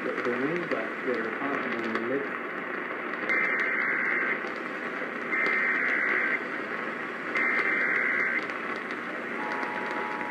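An Emergency Alert System broadcast on an AM radio, heard through its speaker under heavy static from weak reception of a distant station. A voice comes first, then three one-second bursts of the SAME data header's two-tone warbling, about a second apart, encoding a real tornado warning. Near the end a steady two-tone attention signal begins.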